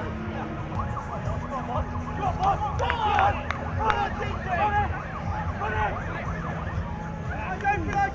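Rugby spectators shouting and cheering, many voices rising and falling together, loudest about three seconds in, over a steady low hum.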